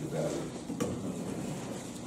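Low, indistinct voices in a small room, with a single sharp click a little under a second in.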